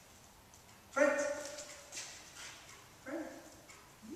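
A dog barks twice in a reverberant hall: one loud bark about a second in, and a softer one near the three-second mark.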